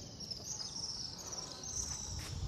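Insects chirping outdoors in a high-pitched, pulsing trill that repeats over and over.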